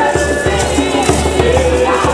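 Music: a group of voices singing together, holding long notes over a steady low beat.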